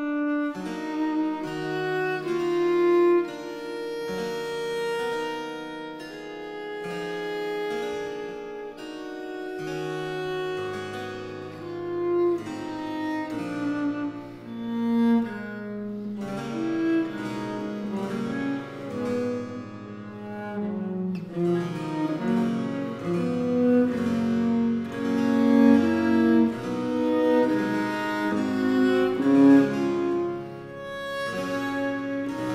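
Baroque cello sonata slow movement (Largo): a solo cello plays a slow melody over a basso continuo accompaniment, with deeper bass notes entering about ten seconds in.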